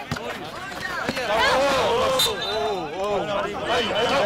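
Several voices shouting and calling over one another, with a sharp knock right at the start and another about a second in.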